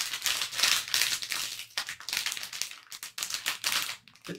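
Crinkly plastic wrapper of a sealed blind bag, squeezed and kneaded by fingers in a dense run of irregular crackles as the figure inside is felt out.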